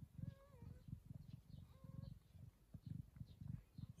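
Faint, short mewing from newborn kittens, twice: once in the first second and again about two seconds in. Under it runs a low, rhythmic purr from the mother cat nursing them.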